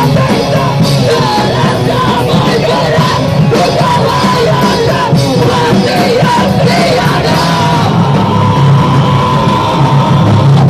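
Loud live hardcore band playing distorted guitars, bass and drums, with shouted vocals yelled into the microphone by the singer and crowd members.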